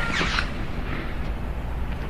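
Steady low background rumble and hiss with no distinct event; no shot is heard.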